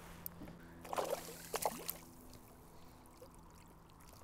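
Water splashing and trickling as a hooked estuary perch is lifted at the surface and scooped into a landing net, with a few short splashes between one and two seconds in.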